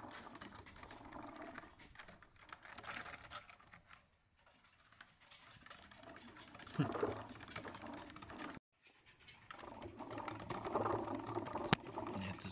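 Pet degus scrabbling and rustling about their cage, a light patter of small scratches and ticks. The sound cuts out for a moment partway through.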